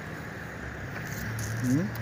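Steady outdoor background noise, a low even hiss, then a man's voice starting to speak in the last half second.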